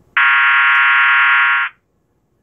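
System Sensor MAEH24MC horn strobe sounding its electromechanical tone with no tissues muffling the sounder, a steady, very loud buzzing horn tone. It is set off about a second and a half, then cuts off suddenly.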